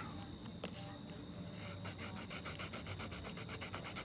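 Fingernail scratching the scratch-off coating of a security-code label on a cardboard box, to reveal the code. Faint rubbing that turns, about two seconds in, into fast, even strokes at about eight a second.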